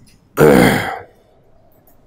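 A man clearing his throat once, a short loud rasp of under a second.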